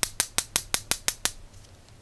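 A metal tool tapping quickly on the glass envelope of a small USB LED filament bulb, a rapid run of light, high clinks, about five a second, that stops a little over a second in.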